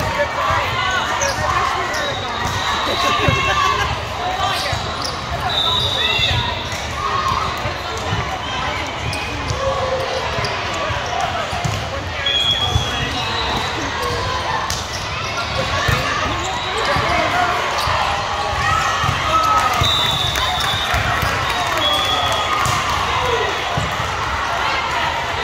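Volleyball being played in a large, echoing gym: many overlapping voices of players and spectators talking and calling, with frequent ball hits and bounces and a few brief, high sneaker squeaks on the court.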